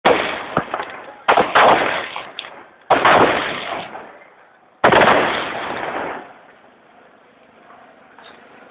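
A series of about five loud gunshots over the first five seconds, two of them close together, each followed by a long echoing tail.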